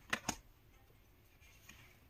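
Two quick clicks of tarot cards knocking together as a card is laid on the pile, close together just after the start.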